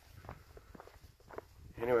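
A hiker's footsteps on a dirt trail, a steady run of short crunching steps at walking pace, with a spoken word near the end.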